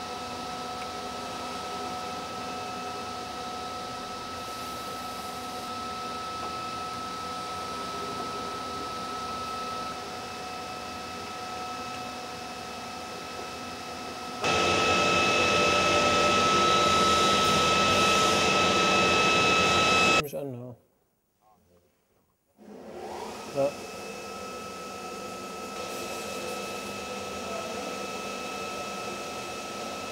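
Steady whirring hum of a small electric blower with a thin, even whine. About halfway through it runs much louder for about six seconds, then the sound drops out for about two seconds before the quieter hum returns.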